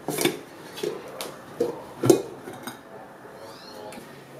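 A ceramic plate and cake mould knocking and clinking against each other and the table, about six separate knocks over the first three seconds, as a chocolate bundt cake is turned out of its mould onto the plate.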